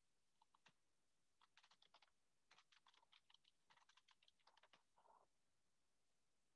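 Very faint computer keyboard typing: irregular runs of quick key clicks.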